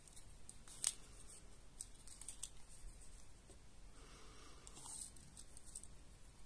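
Faint handling noises from a retractable sewing tape measure and crocheted fabric: small clicks with one sharper click about a second in, and a soft rustle about four seconds in as the tape is laid out across the fabric.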